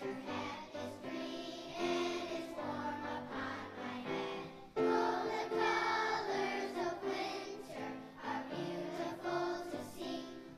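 Second-grade children's choir singing a song together. The singing gets suddenly louder a little under five seconds in.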